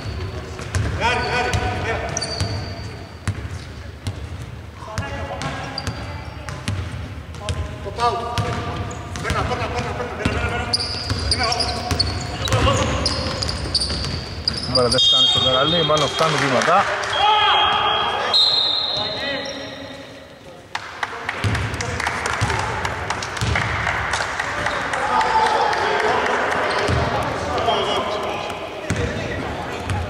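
Basketball being dribbled on a hardwood court, repeated bounces echoing in a large, near-empty arena, mixed with players' voices calling out on court.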